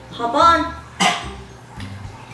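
A dog barks once, a short sharp bark about a second in.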